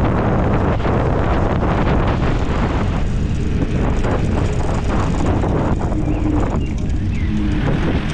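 Steady wind rush and low rumble on the microphone of a camera riding along on an MS Energy X10 electric scooter, mixed with tyre and road noise; the scooter's motor is not clearly heard.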